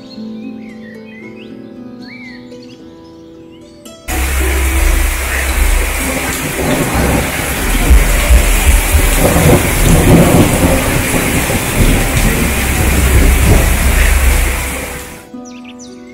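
Heavy rain pouring down on a reed-screen pergola and wooden decking, a dense hiss with a deep rumble underneath. It cuts in suddenly about four seconds in and lasts about eleven seconds. Before and after it, plucked, harp-like background music plays with bird chirps.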